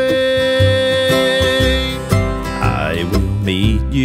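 Bluegrass gospel band recording: acoustic guitar and bass under a long held note, followed by two quick upward slides in the second half.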